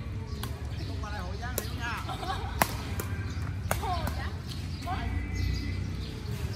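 Badminton rackets hitting a shuttlecock in a rally: a series of sharp, short strikes about a second apart, the loudest near the middle.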